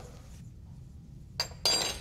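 A spoon clinking twice against a small glass bowl while sugar is mixed in it. The two clinks come about a second and a half in, the second a little longer and ringing.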